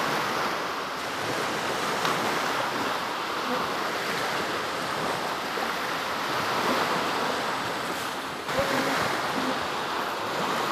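Small waves of the Baltic Sea breaking and washing onto a sandy beach: a steady surf hiss. There is a short dropout and a thump about eight and a half seconds in.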